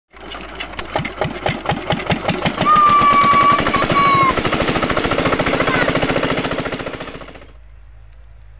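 45-year-old Kirloskar single-cylinder diesel engine on a shallow tube-well water pump being hand-started: its firing strokes come quicker and quicker as it catches and runs. A steady high whistle-like tone sounds over it for about a second and a half in the middle. The sound cuts off shortly before the end, leaving a faint hum.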